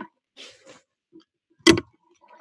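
Faint rustling of things being handled on a desk, then one sharp knock close to the microphone near the end.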